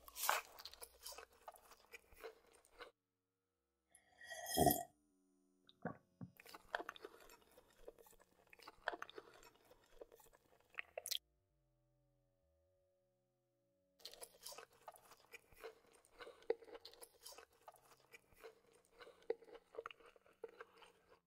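Close-up chewing of French fries, moist and crunchy, in three stretches broken by short silent pauses. About four seconds in comes one brief, louder throaty vocal sound.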